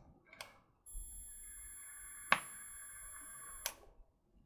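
A long drag on a vape mod and rebuildable atomizer set at 13.5 watts: about three seconds of quiet airflow hiss and coil sizzle with a faint high electrical whine, a sharp click partway through, and another click as it stops.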